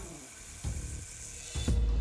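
Belt grinder running, its abrasive belt giving a steady high hiss that fades out about a second and a half in. A deep low thud follows near the end, under background music.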